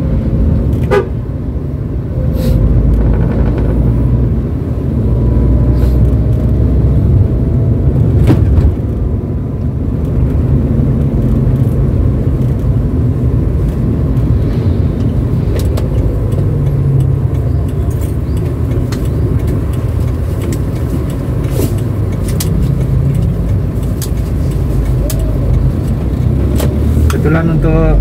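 Cabin sound of a 2007 Daihatsu Terios TX with manual gearbox driven at low speed: a steady low engine and road rumble, with occasional short knocks.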